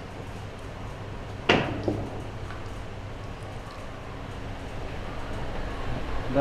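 A ceramic bowl knocks against a hard surface with one sharp knock about a second and a half in and a lighter one just after, over a steady low room hum.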